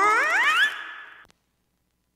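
Voice processed through a V8 sound card's effects: a pitched, voice-like tone slides steeply upward in pitch, holds briefly and fades with reverb, then cuts off to silence a little over a second in.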